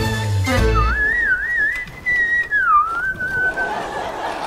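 A theme-music sting ends, and a lone whistled tune follows, wavering and sliding up and down in pitch for about three seconds before stopping near the end.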